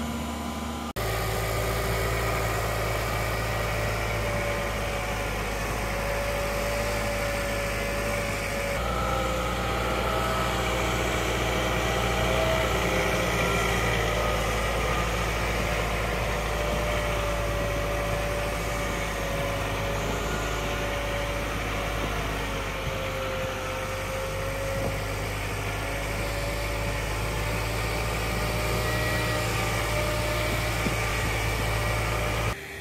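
John Deere compact utility tractor's diesel engine running steadily as the tractor drives with a loaded front-loader bucket, a whine over the engine hum drifting slightly up and down in pitch.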